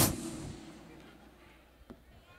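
A single sharp thump over the stage microphone, a comedian's sound effect for a car door being shut, dying away over about half a second into faint room noise.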